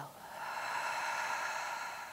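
A woman's long, deep exhale, a breathy rush of air that swells and then fades over about two seconds: a slow yoga breath out following a cued deep inhale.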